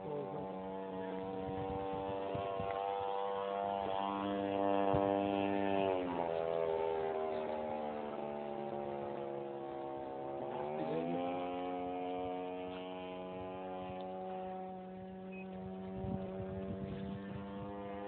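Petrol engine of a large radio-controlled Extra model aerobatic plane in flight, running steadily. Its note drops about six seconds in, stays lower for a few seconds, then climbs back up.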